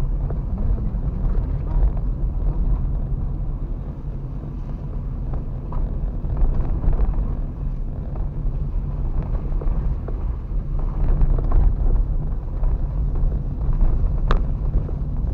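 Inside a car's cabin, a steady low rumble of engine and tyres while driving slowly over an unpaved dirt road, with a few faint knocks and rattles from the rough surface.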